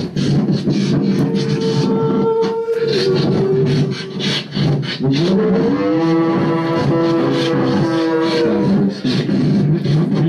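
Vocal beatboxing into a handheld microphone played through a small amplifier: a steady rhythm of mouth percussion under held pitched notes, which bend and glide about five seconds in.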